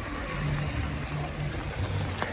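Steady hiss of heavy rain falling around an umbrella, with a low hum that comes and goes and a few faint ticks.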